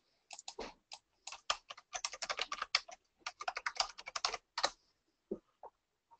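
Typing on a computer keyboard: a quick run of keystrokes lasting about four seconds, then two more single taps near the end.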